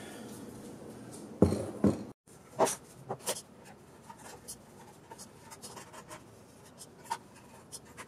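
Light hand-work sounds: two knocks about a second and a half in as the assembly is set down on the table, then sparse small clicks and light scratching from a small tool worked on the 3D-printed plastic housing.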